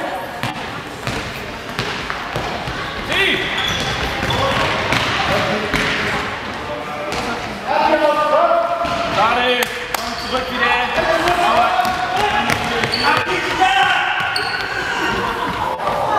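Youth handball game in a large, echoing sports hall: high-pitched voices shouting and calling across the court, with a handball bouncing on the wooden floor and scattered sharp knocks.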